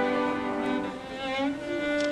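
Cello played with a bow: a few held notes with vibrato, moving to new pitches about a second in and again shortly after.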